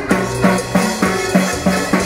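Live Latin dance music from an electronic keyboard and timbales: a bass line pulses about three times a second under keyboard chords while the timbales are struck on the beat.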